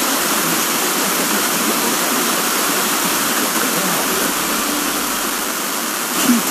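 Loud, steady hiss of FM receiver static: a wideband FM demodulator on an RTL-SDR dongle, tuned to a distant broadcast station whose signal has faded to the noise threshold. The station's audio is nearly lost beneath the hiss.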